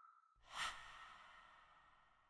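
A soft whoosh rises about half a second in and fades away slowly, leaving a faint ringing tone. It is a sound effect on an animated logo at the close of the video.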